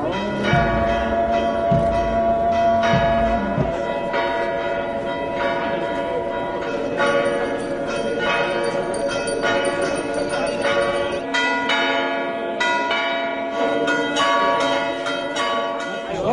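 Church bells pealing: several bells of different pitch struck in turn, a new stroke about every second, each tone ringing on under the next.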